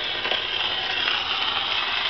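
Gramophone needle running in the lead-in groove of a 78 rpm record: a steady surface hiss through the horn, with no music yet.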